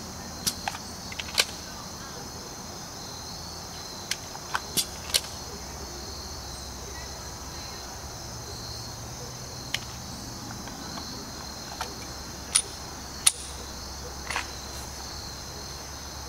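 Crickets and other insects chirring steadily and high-pitched. Over them come a dozen or so short, sharp clicks and clacks of a semi-automatic pistol handled empty in reload practice: magazine released and inserted, slide worked, in small groups about half a second apart.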